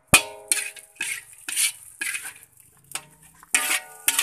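Metal spatula scraping and knocking against a large metal wok while stirring fried rice: a sharp ringing clang right at the start, then repeated scrapes about every half second, each with a brief metallic ring.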